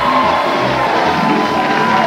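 Game-show music playing over a studio audience cheering, with a long held note and a steady low beat.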